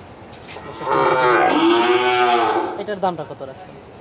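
A cow mooing: one long, loud call of about two seconds.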